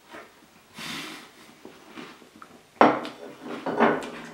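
A man eating a cookie topped with whipped cream, handling a plate, with short appreciative hums in the last second or so.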